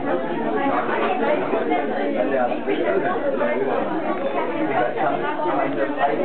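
Chatter of many people talking at once around a dinner table: overlapping conversations with no single voice standing out.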